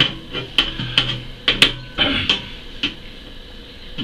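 Small hard parts being handled against the aluminium chassis rail of an RC tow truck: a run of irregular sharp clicks and knocks as a black drivetrain part is set in place on the rail.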